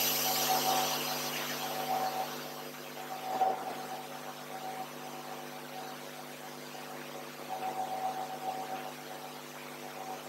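Room tone: a steady electrical hum with a high thin tone, and a hiss that fades away over the first few seconds. A few faint, indistinct sounds come about three and a half and eight seconds in.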